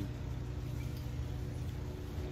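Steady low background rumble of outdoor ambience, with no distinct sounds standing out.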